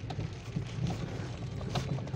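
Inside a car's cabin on a wet dirt forest road: steady low drone of the engine and tyres, with rain on the windscreen and a few light taps.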